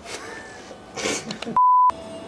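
A short breathy noise about a second in, then a single steady high-pitched electronic beep lasting about a third of a second near the end, with the background cut to dead silence around it, as if edited in.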